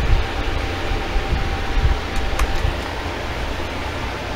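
Steady hiss with a low rumble, like a fan or air conditioner running, with a faint steady tone and a couple of faint clicks from the wrapper and paper checklist being handled.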